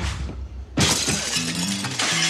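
A low thud, then about a second in a sudden crash of window glass shattering, with the breaking glass ringing on afterward.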